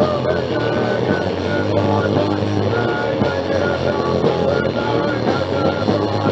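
Thrash punk song played by a band with guitar and drums, from a lo-fi cassette home recording.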